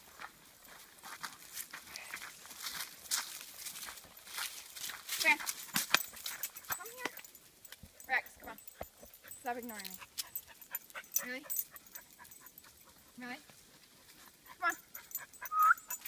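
Footsteps crunching on a gravel trail, with several short wordless calls and whistles to the dogs. A brief whistle near the end calls a dog back.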